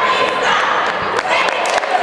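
Cheerleading squad shouting a cheer together, followed about halfway in by a run of sharp claps and smacks on the hardwood floor.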